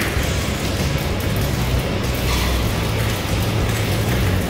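Water gushing out of an opened PVC condensate drain line and splashing onto the floor and a ladder below as the clogged drain is flushed clear. Music plays in the background.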